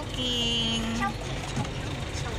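Low, steady rumble of a vehicle heard from inside its cabin, with a single flat tone held for about a second near the start.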